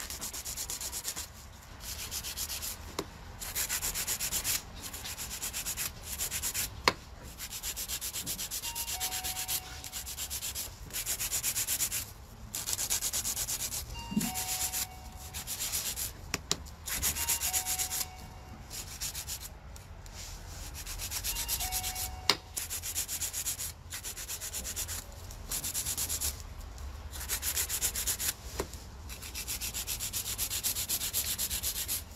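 A hand nail file rasping back and forth across long acrylic nails in runs of quick strokes broken by brief pauses. Twice a sharp click stands out above the filing.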